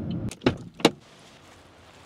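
Low rumble inside a car cabin, then two or three short sharp clicks, then faint steady background.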